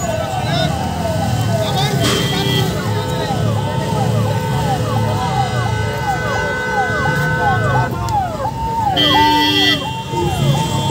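Electronic siren-style hooter sounding a repeating rising-and-falling wail, over the rumble of vehicle engines. A horn sounds about nine seconds in.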